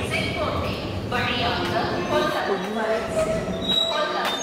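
Passenger train coaches rumbling low alongside the platform, the rumble thinning out about two seconds in, under voices.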